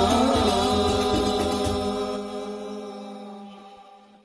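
Closing bars of an Islamic sholawat song with hand-struck rebana frame drums and chanted singing. The drums stop about a second and a half in, and the last held note fades out.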